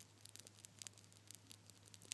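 Near silence: faint scattered clicks and crackles over a low steady hum.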